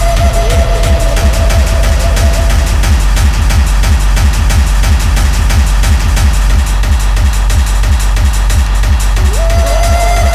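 Loud, fast electronic dance music from a live free-party set, with a driving kick-drum beat and heavy bass. A held synth note sounds for the first couple of seconds and fades, and near the end a synth slides up into the same held note again.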